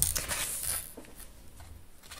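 Tarot cards being slid and laid down on a wooden tabletop: a soft papery rustle with a few light taps, mostly in the first second.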